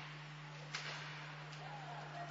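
Ice hockey arena ambience during play: a steady low hum under a faint haze of crowd noise. One sharp knock from the play on the ice comes about three quarters of a second in.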